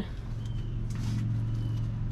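A steady low motor hum that holds one even pitch throughout, with a brief faint rustle about a second in.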